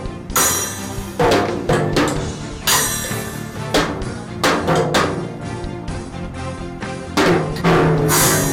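Junior drum kit played unevenly by a child: irregular tom and bass-drum hits, with a few cymbal crashes about half a second in, near three seconds and near the end, over steady background music.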